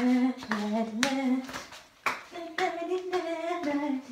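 A woman's voice singing a melody in held notes, with short breaks between phrases.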